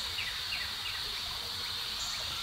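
Outdoor insect chorus: a steady high-pitched buzz, with a run of short chirps repeating a few times a second in the first half.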